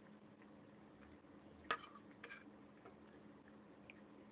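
A cat licking food off a plate, mostly very quiet: a few faint ticks, one sharp click against the plate a little under two seconds in, then a weaker pair of clicks.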